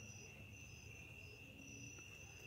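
Crickets chirping faintly in near silence: a steady high trill with a higher one that comes and goes.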